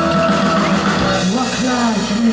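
Live pop-rock band playing loudly, with held notes giving way about a second in to a woman singing the lead vocal into a microphone.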